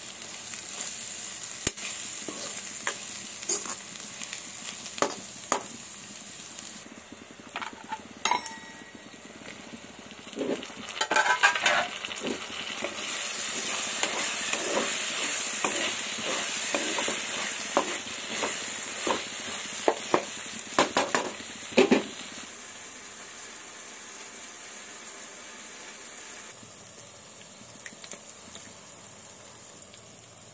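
Chopped onions, tomatoes and green chillies sizzling in oil in a nonstick pan while a spatula stirs them, scraping and clicking against the pan. The sizzle grows louder partway through. The stirring stops a little over two-thirds of the way in, leaving a quieter steady sizzle.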